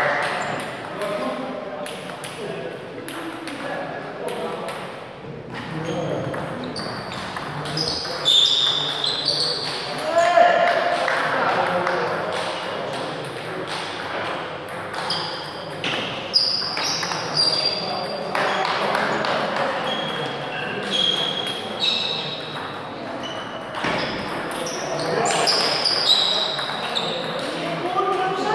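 Table tennis play: the ball clicking off the paddles and bouncing on the table in quick runs of sharp clicks, with indistinct voices talking in the background.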